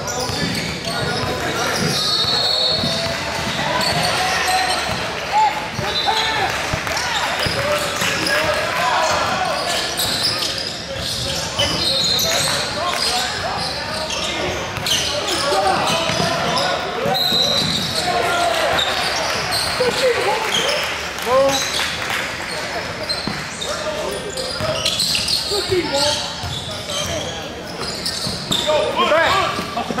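Basketball being dribbled on a hardwood court, with sneakers squeaking now and then and the steady indistinct chatter of voices from players and spectators, echoing in a large gym.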